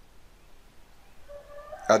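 Faint room noise in a pause between a man's spoken phrases, with a faint brief tone shortly before his voice resumes near the end.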